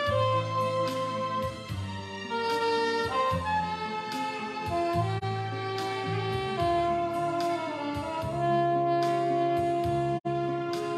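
Soprano saxophone playing a slow melody of long held notes over a recorded backing track with a bass line and a steady drum beat.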